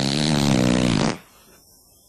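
A single low, buzzing, drawn-out noise, falling slightly in pitch, that stops about a second in.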